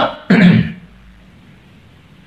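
A man briefly clears his throat once, a short sharp rasp, in a pause just after finishing a spoken phrase.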